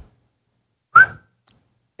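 One short rising whistled chirp about a second in, standing in for crickets chirping to mark that nothing turns up.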